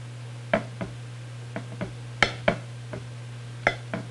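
Carving knife and carving fork clicking and tapping against the plate and crisp skin while a roast chicken is carved: about nine short, sharp clicks at uneven intervals, over a steady low hum.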